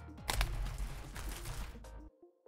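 Rustling and crinkling of a cardboard trading-card booster box and its packaging being handled and opened, with several sharp clicks over a low handling rumble. It cuts off abruptly at the end.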